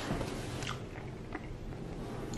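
A person chewing a mouthful of steak and mashed potato with gravy. It is faint, with a few soft, short mouth clicks.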